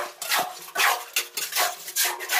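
A wooden-handled hand tool scraping and tapping in wet cement mortar in quick, even strokes, about two or three a second, some ending in a dull thud. The strokes are the fill being packed around a squat toilet pan.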